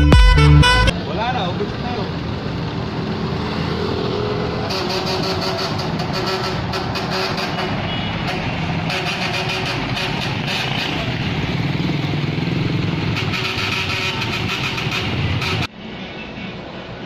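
Saxophone-led jazzy intro music ending about a second in, then steady city street traffic: cars, a bus and motorcycles running past, until it cuts off suddenly near the end.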